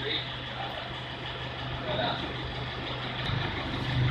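Toyota Fortuner's engine idling at the tailpipe, a steady low hum.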